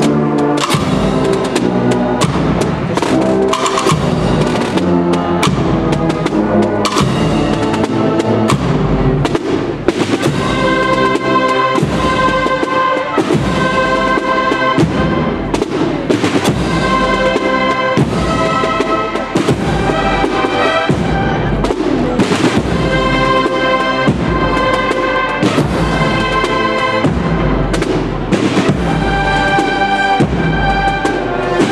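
A Spanish Holy Week marching band (agrupación musical) playing a processional march: a brass melody over snare drums and crash cymbals, with steady, regular drum strokes.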